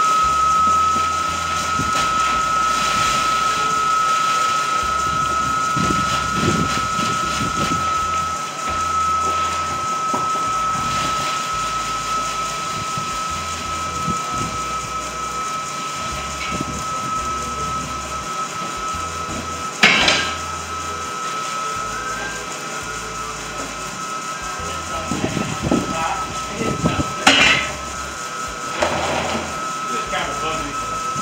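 Feed mill machinery running with a steady, high-pitched motor whine, held at one pitch. Two sharp knocks break in, about two-thirds through and near the end.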